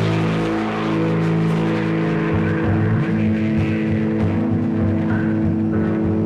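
Rock band playing live: electric guitars holding long, droning chords, with a pulsing low rhythm coming in about two seconds in.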